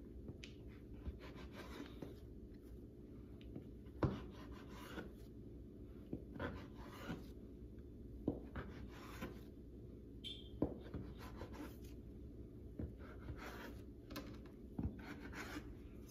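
Kitchen knife slicing through a log of raw yeast dough on a cutting board: faint scraping and about ten scattered soft knocks of the blade on the board, the loudest about four seconds in, over a low steady hum.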